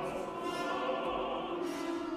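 Contemporary opera: orchestra with singing, a dense layer of held notes sounding together without a break.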